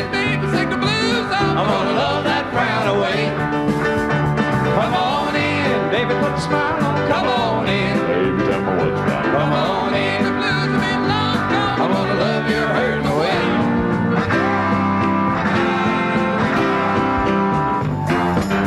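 Country band music from a live performance, with guitar and drums backing group vocal harmony singing.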